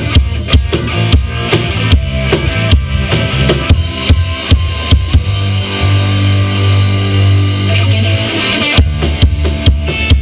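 Live rock band playing an instrumental passage on electric guitar, bass guitar and drum kit, with a steady drum beat. A little past halfway the drums stop while a low chord is held, and the beat comes back near the end.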